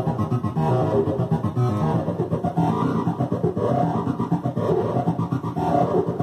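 Access Virus TI synthesizer playing a patch: pitched notes over a heavy bass, pulsing in a fast, even rhythm.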